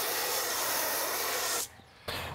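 Pressure-washer foam cannon spraying wheel-cleaner foam with a steady hiss, which cuts off suddenly near the end.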